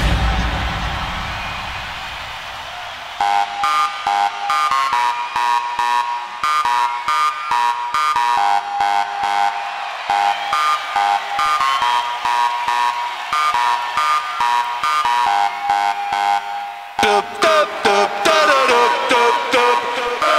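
Breakdown in an electronic dance track: the kick drum and bass drop out and a fast, choppy synth riff repeats on its own, high and alarm-like. About 17 seconds in, the low end comes back with falling, sliding synth sounds, building toward the return of the beat.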